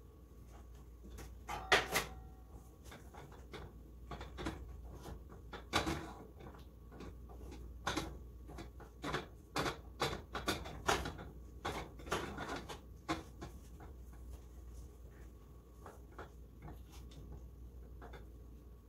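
Wooden spoon stirring a thick chocolate, oat and peanut mixture in a saucepan, knocking and scraping against the pot at irregular moments, the loudest knock about two seconds in and a busy run of them in the middle.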